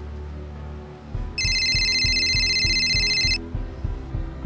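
Phone ringtone, a fast high trill lasting about two seconds, starting about a second and a half in, over background music with a low pulsing beat.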